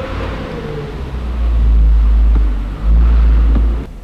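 A loud low rumble that swells into two long surges, from about a second and a half in and again from about three seconds, then cuts off suddenly just before the end.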